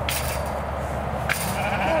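Sheep bleating, a wavering call near the end, with two brief rustling noises before it.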